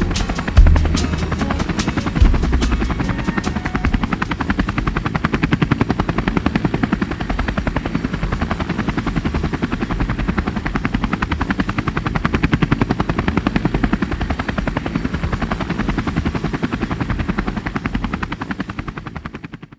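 Soundtrack sound effect of a steady, rapid rhythmic chopping, like helicopter rotor blades, with a few heavy low booms in the first two seconds.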